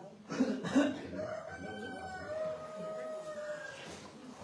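A rooster crowing once. Two short loud notes open the call, and it ends in a long, steady held note.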